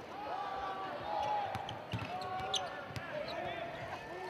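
A basketball being dribbled on a hardwood court, with soft thuds at intervals, short squeaks of sneakers on the floor and a low murmur of the arena crowd.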